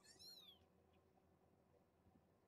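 A young kitten mewing once: a short, high cry that rises and then falls in pitch, lasting about half a second.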